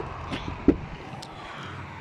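A single short knock about two-thirds of a second in, over steady outdoor background noise.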